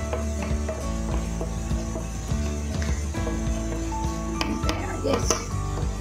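Butter melting and sizzling in a pan while a wooden spoon stirs it, with light scrapes and taps of the spoon against the pan, over background music.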